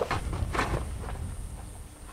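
Feet scuffing and stamping on dry dirt ground as a man dances, a few soft thuds in the first second, then fading.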